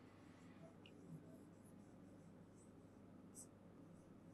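Near silence, with a few faint taps and light scratches of a stylus writing on an interactive whiteboard screen.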